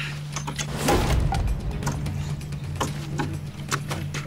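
Irregular chopping blows of an axe biting into the dry trunk of a dead palm tree, several strikes, the heaviest about a second in. A steady low music drone sits underneath.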